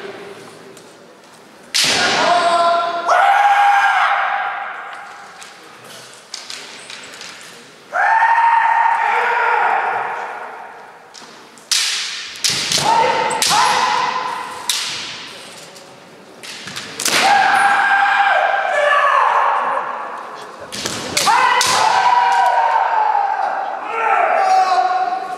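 Kendo fencers' kiai shouts, several of them loud and each held for a second or two, together with sharp cracks of bamboo shinai strikes and stamps of bare feet on a wooden floor.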